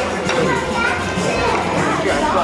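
Overlapping voices of several people talking over the steady chatter of a busy room.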